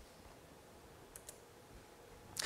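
Near silence, broken by two faint clicks in quick succession about a second in: a computer keyboard key pressed to advance the presentation slide.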